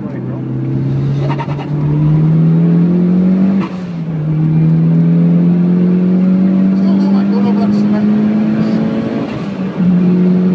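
Mitsubishi Lancer Evolution IX GT Wagon's turbocharged four-cylinder engine under full throttle, heard from inside the cabin, revs climbing in third. An upshift a little over three and a half seconds in drops the pitch, the revs climb again through fourth, and a second upshift near the end drops it once more.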